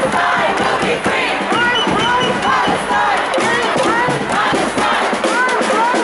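Large crowd of protest marchers shouting, with many raised voices overlapping, loud and unbroken.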